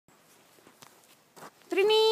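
Faint footsteps in snow, then near the end a person's voice calls out in one long, high, held note.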